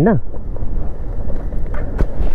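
Wind buffeting the microphone over the low rumble of a motorcycle riding on a gravel road. A man's voice trails off in the first moment.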